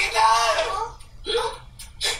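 A character's voice from an anime soundtrack crying out 'H-help!', followed by a short second utterance about a second and a half in.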